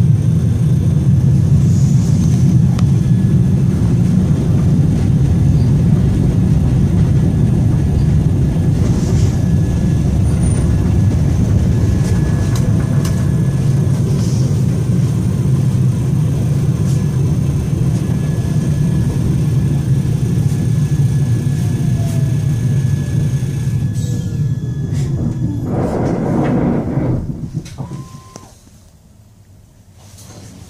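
Cabin sound of a Siemens Avenio low-floor tram on the move: a steady low rumble of wheels on rail and running gear. Over the last several seconds a faint electric motor whine falls in pitch as the tram brakes. Near the end a short burst of noise comes, and then the cabin goes quiet as the tram comes to a stop.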